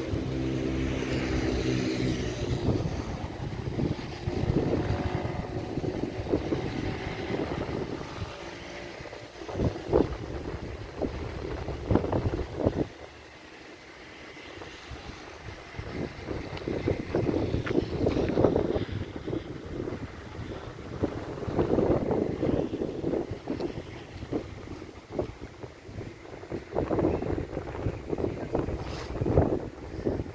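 Wind buffeting the microphone in uneven gusts, easing for a couple of seconds a little before halfway through. A low, steady hum with a clear pitch sounds under it in the first few seconds.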